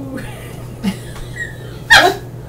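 A woman's short, high-pitched squeal near the end, very brief and the loudest sound here.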